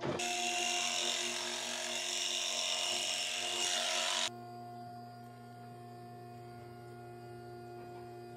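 Electric hair clippers running as they shave a patch of hair on a calf's back, a steady buzzing rasp that stops suddenly a little over four seconds in. A steady low hum goes on after they stop.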